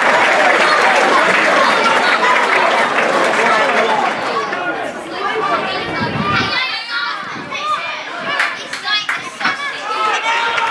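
Football crowd on a small terrace cheering and chattering after a goal, a dense mass of voices that thins out. About six and a half seconds in it cuts to open-air match sound: scattered players' shouts and a few sharp ball kicks.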